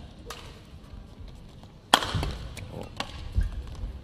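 Badminton doubles rally: a racket strikes the shuttlecock with a sharp crack about two seconds in, after a lighter click near the start, followed by low dull thumps of players' feet on the court.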